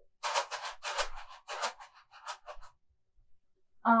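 Homemade rice shaker, a plastic tub filled with rice and sealed with an elastic band, shaken in quick strokes for about two and a half seconds, the grains rattling against the plastic, then it stops.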